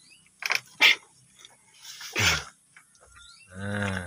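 Goats feeding on leafy fodder: a few short crackles early on, a short rough call about two seconds in, and near the end a low, steady bleat, the loudest sound.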